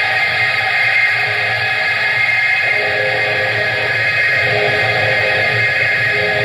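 Live rock band with electric guitar to the fore, holding sustained, ringing chords; new, lower notes come in about halfway through.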